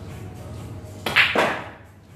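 A pool shot about a second in: the cue strikes the cue ball and the balls collide, a quick run of sharp clacks within half a second.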